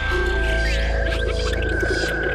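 Intro music for a show's title sequence: a low drone under a steady held high note, with a fan of gliding tones sweeping through about half a second in.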